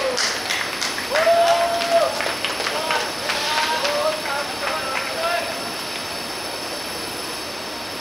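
Players' shouts and hand claps celebrating a goal in a football match, several loud high calls and scattered claps over the first five seconds, dying away into a steady outdoor hiss.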